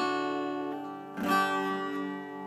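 Acoustic guitar: a strummed chord rings on, and a new chord is strummed a little over a second in and left to ring, as the song's final chords.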